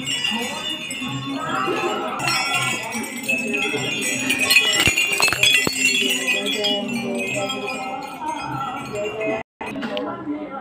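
Many small brass temple bells ringing and clinking together, with music and voices mixed in.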